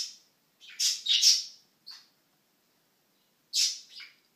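A person's breathy, voiceless laughter: a few short hissing breaths bunched about a second in, with one more near the end.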